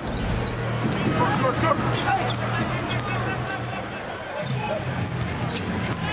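Basketball dribbled on a hardwood court, a string of sharp bounces and court noises over a steady low arena hum.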